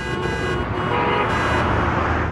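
Road-traffic sound effect with horn-like tones, starting suddenly and running loud, used as the bumper that opens a show segment.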